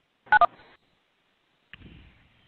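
Two short telephone keypad (DTMF) tones in quick succession, each a pair of pitches sounding together, heard over a conference-call phone line. Faint line hiss comes up near the end.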